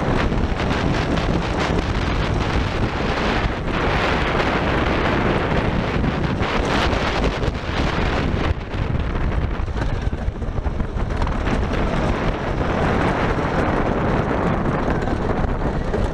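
Wind buffeting the microphone over the steady rumble and rattle of a wooden roller coaster train running fast along its track.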